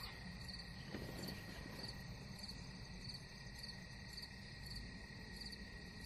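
Faint steady background noise with a thin high tone and a faint high chirp that repeats evenly a few times a second.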